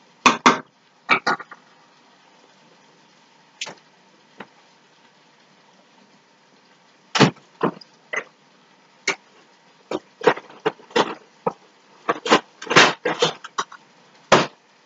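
Kitchen clatter: sharp knocks and clinks of cookware and utensils being handled, a few in the first second and a half, then a quiet stretch, then a dense run of knocks over the last seven seconds.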